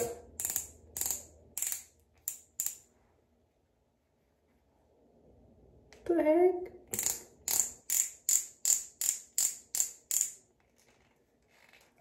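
Twist-up click mechanism of a pen-style cushion lip tint applicator, turned click by click to push the tint up to the brush tip. There are two runs of even clicks, about three a second, with a pause between them and a brief hum in that pause.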